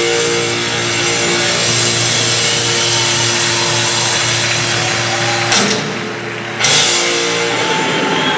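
Live rock band playing electric guitar, bass and drums, with chords ringing out. A little past halfway the sound drops briefly, then the full band comes back in on a sharp hit.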